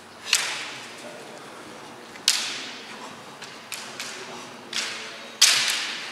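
Bamboo shinai striking in a kendo bout: about seven sharp, separate cracks at irregular spacing, the loudest near the end, each echoing briefly in a large hall.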